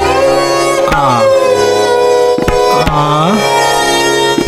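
Hindustani classical accompaniment: a melodic instrument holding notes and sliding between them, over sparse tabla strokes.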